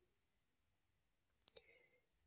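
Near silence in a small room, broken by a couple of faint, short clicks about one and a half seconds in.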